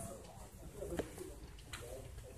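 A pause in amplified speech in a meeting room: low room noise with faint, brief murmurs and a single sharp click about a second in.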